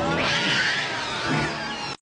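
Gremlin creature voices from a film soundtrack: several high, cat-like squeals and shrieks gliding up and down in pitch, which cut off suddenly near the end.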